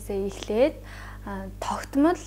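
Only speech: a woman speaking Mongolian in a classroom lecture.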